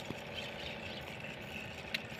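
Faint, steady hum of an idling engine, with one short click near the end.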